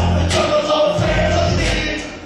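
Loud live music through a PA, with heavy bass and vocals, recorded from within the crowd at a club show.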